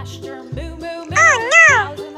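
Children's background music with a steady low beat, a little under two beats a second. About a second in comes a loud, high call that wavers up and down twice.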